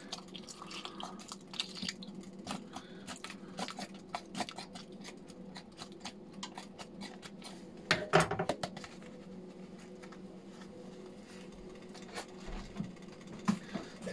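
Plastic packet crinkling and rustling as powder is poured from it into a pot of soup: many light clicks and crackles, with a louder rustle about eight seconds in, over a faint steady low hum.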